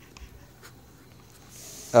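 Faint rustling and a few soft clicks, with a soft hiss rising about a second and a half in; a man's voice begins at the very end.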